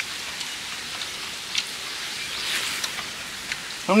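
Steady outdoor background hiss with a few light clicks of chopsticks against dishes.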